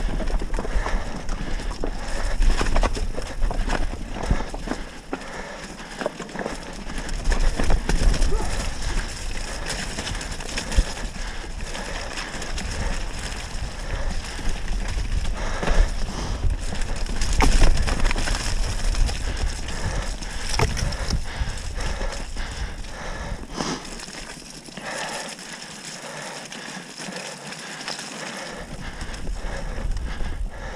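Mountain bike descending a rocky, muddy trail: tyres rolling over loose stones and the bike rattling with many quick knocks, over a low rumble that drops away twice.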